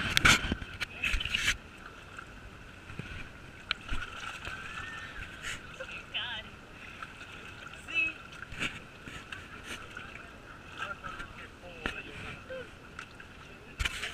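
Knocks and rubbing of a body-worn action camera being handled in the first second or so, then muffled open-air background with faint distant voices.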